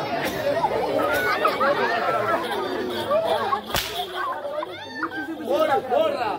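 A single sharp crack of a twisted rope whip a little under four seconds in, heard over voices and crowd chatter.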